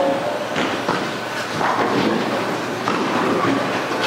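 Bowling alley din: a steady rumble of balls rolling down the lanes, broken by several sharp clatters of pins and pinsetter machinery.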